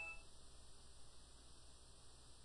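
Near silence: faint room tone and hum, with the last fading ring of a short electronic chime in the first instant.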